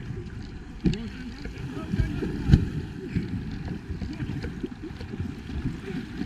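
Water splashing and sloshing right at a waterline camera as swimmers kick and stroke beside an inflatable rubber boat. There are sharper splashes about one, two and two and a half seconds in, the one at two and a half seconds the loudest.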